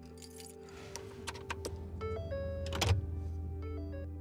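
Background music with steady tones and a stepped melody, over light clicks and rattles of a small object handled in the hands during the first couple of seconds, and one louder knock near the end.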